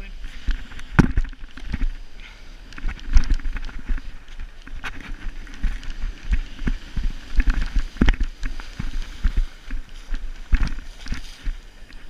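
Wind buffeting an action camera's microphone over the wash of surf, with irregular thumps and splashes from wading through the shallows of a beach.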